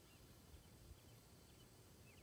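Near silence, with faint short high chirps of a bird repeating about every half second.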